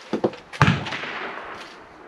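Two sharp knocks about half a second apart, the second louder and trailing off over about a second, from the PCP air rifle being handled on the shooting bench.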